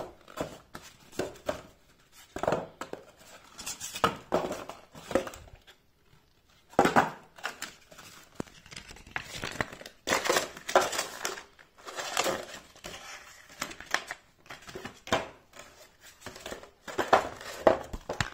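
Paper and cardboard packaging being handled: a cardboard box and a folded paper instruction booklet crinkling and rustling in irregular bursts, with a brief pause midway.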